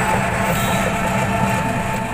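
Steady running noise of a small passenger vehicle heard from inside while riding: a constant engine hum with rattle and road noise.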